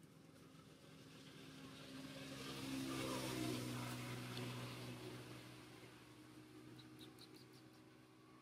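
A motor vehicle's engine passing by: it grows louder over about three seconds, peaks, then fades away with its pitch dropping slightly.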